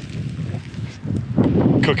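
Wind buffeting the microphone with a low rumble, before a man begins speaking near the end.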